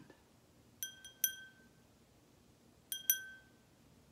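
Small glass hand bell rung twice, each time a quick double strike of the clapper giving a bright, clear ring that fades within about half a second.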